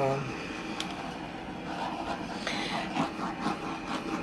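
Handheld butane torch hissing steadily as it is passed over a wet layer of white acrylic paint on a canvas.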